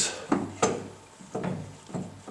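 A few light metallic knocks and clunks as a UTV front differential unit is worked up and back into its mounting bracket in the frame.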